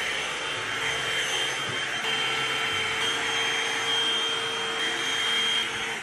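Hot-air blow-dry brush running: a steady rush of air with a thin high motor whine, switched off just before the end.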